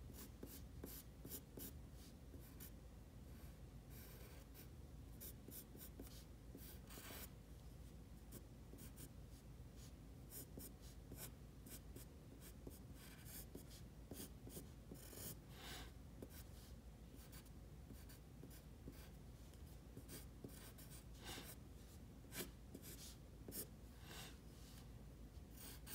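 Faint scratching of a graphite pencil on paper in many short, irregular sketching strokes.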